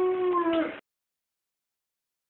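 The closing held note of a TV show's theme jingle, a single steady pitch that dips slightly and cuts off abruptly under a second in, followed by dead silence.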